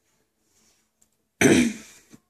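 A woman coughs once, sharply, about one and a half seconds in, after a quiet stretch.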